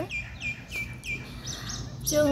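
Small birds chirping: a few short, high, downward-sweeping chirps.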